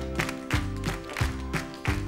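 Live band playing the instrumental lead-in to a song: drums keeping a steady beat under sustained guitar and keyboard notes.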